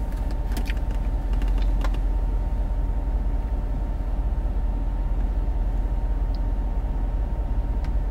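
Steady low rumble of a car cabin with the engine idling, with a faint steady hum above it. A few faint clicks come in the first two seconds.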